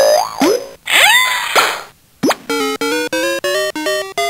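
Electronic sound effects and a tune from a 2005 Playskool Busy Ball Popper toy. In the first two seconds there are a couple of sliding-pitch swoops and a hissy burst. After a brief gap comes a quick downward swoop, then a bouncy melody of short beeping notes.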